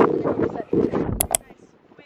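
Wind buffeting the microphone: a gusty low rumble that dies away after about a second and a half. Two sharp clicks come just past a second in.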